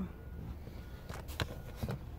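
A few faint clicks and taps, starting a little after a second in, over a steady low hum.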